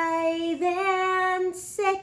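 A single high voice singing unaccompanied, holding one long note, then stepping up slightly to a second long note, followed by a short note and a hissing 's' sound near the end.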